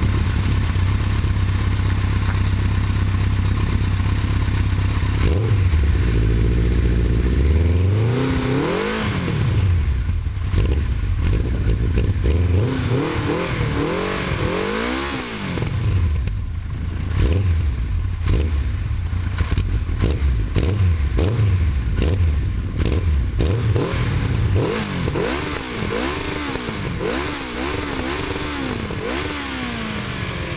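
Yamaha XJR1300's air-cooled inline-four engine through an aftermarket Delkevic exhaust silencer, free-revved while the bike stands still. It idles steadily for about five seconds, then is revved over and over, the pitch rising and falling with each twist of the throttle, with a run of short sharp blips in the middle.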